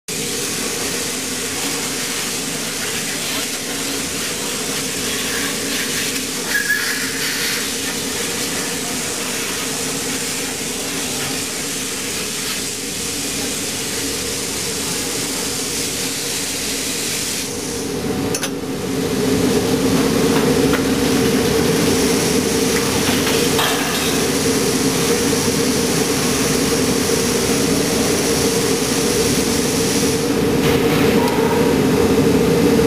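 Steady hum and hiss of an STP 900-tonne aluminium high-pressure die-casting machine at work with its automatic ladle. There is a brief knock about a quarter of the way in, and the hum gets louder about two-thirds of the way through.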